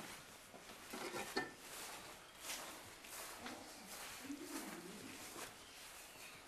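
Faint, irregular footsteps of people walking, with a low murmur of a voice past halfway.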